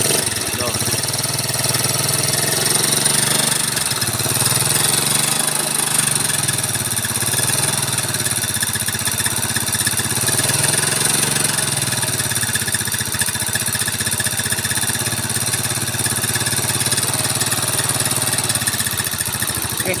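Yamaha Mio Soul's air-cooled single-cylinder four-stroke scooter engine idling steadily with a very rough mechanical clatter from the cylinder head and block. On teardown the cause proves to be a seized oil pump that left the head running dry.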